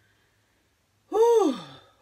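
A woman's long voiced sigh about a second in, its pitch rising and then falling away.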